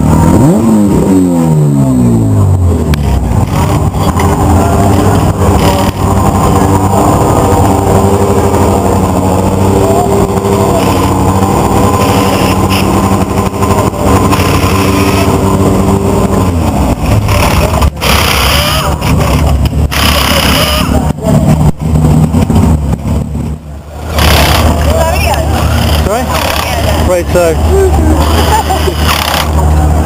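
Touring-car engines running steadily on the starting grid, their low engine note continuous. In the first couple of seconds one engine's revs fall away after a blip.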